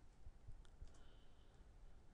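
Near silence: room tone with a few faint clicks about half a second to a second in.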